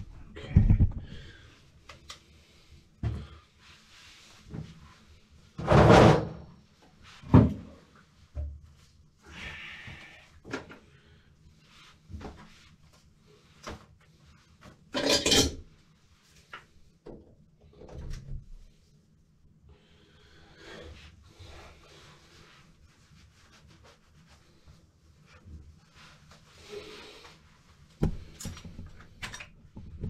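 Irregular knocks, scrapes and clatter of objects being handled by hand, with two longer, louder scraping noises about six and fifteen seconds in.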